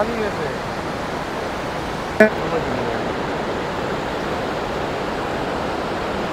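Fast, high-pressure mountain river (the Kunhar) rushing over rocks and boulders in a steady wash of white-water noise. A brief voice sound cuts in about two seconds in.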